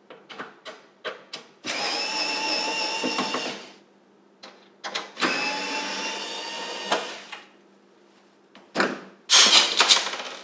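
Small IKEA cordless screwdriver running in two steady bursts of about two seconds each with a steady whine, backing out the screws that hold the oven door's side trim. Short clicks of handling come between the runs, and a few sharp knocks near the end.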